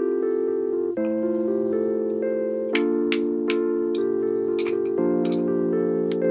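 Background electric-piano music with steady chords. From about halfway in, a hammer taps on stone about six times, each tap a sharp clink, spread over roughly three seconds.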